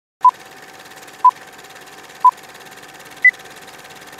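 Film-leader countdown sound effect: three short beeps a second apart, then a fourth, higher beep, over a steady film-projector-style hiss.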